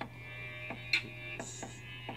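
A steady low hum with faint, steady high tones above it, broken by a single short click about a second in.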